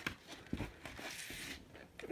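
Faint handling noise from a cardboard gatefold record sleeve being moved, with a few light taps.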